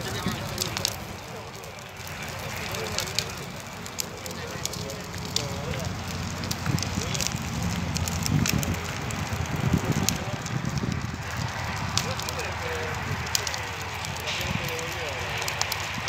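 Tires burning on the road, with irregular crackles and pops over a steady rumble of flame and wind. Voices can be heard faintly in the background.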